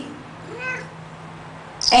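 Tabby-and-white domestic cat giving one short, soft meow that rises and falls in pitch, about half a second in.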